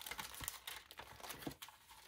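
Light rustling and crinkling of small cardstock scraps being picked up and handled, with many small irregular clicks.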